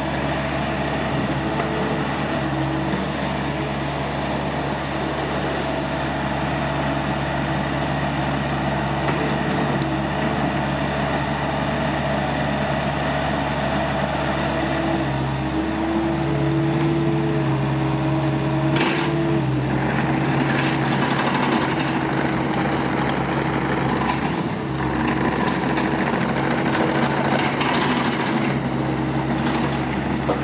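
Doosan DX80R midi excavator's Yanmar diesel engine running steadily under hydraulic load while the machine slews and works its boom and arm. The engine note steps up about halfway through, and a few metallic clanks follow in the second half.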